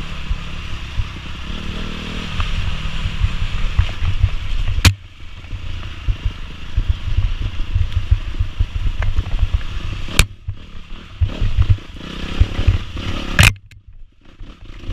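Dirt bike engine running under changing throttle over rough ground, with the rattle of the bike over bumps. Three sharp knocks, about five, ten and thirteen seconds in, are each followed by a short drop in the sound.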